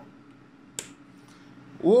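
A single sharp click about a second in as a rocker switch on the power-supply test bench is flipped, switching on a Delta server power supply, with a fainter click shortly after.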